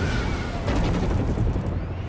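Film sound effect of an explosion tearing through a helicopter's cabin as it is shot down: a heavy low rumble with a second sharp blast about two-thirds of a second in.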